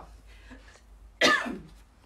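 A woman coughs once, a single short cough about a second in.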